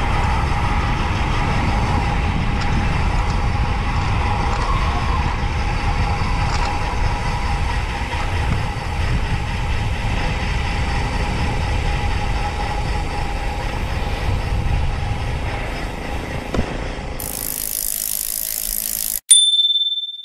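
Wind rushing over the camera microphone with tyre and road noise while riding a road bike at speed. Near the end a short hiss, a sudden cut to silence and a single electronic chime.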